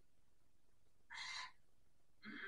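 Near silence, broken about a second in by one short, breathy exhaled 'hoo'.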